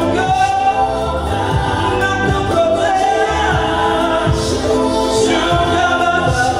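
Live gospel song: a male singer singing into a microphone over instrumental backing of sustained chords and repeated low drum beats.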